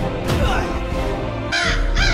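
Crow cawing: a harsh call that starts about one and a half seconds in, over a music soundtrack.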